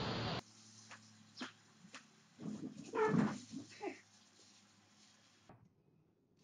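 A brief burst of noise at the start, then a few short, whining, pitched calls over a faint steady hum; the loudest call comes about three seconds in. Everything cuts off about five and a half seconds in.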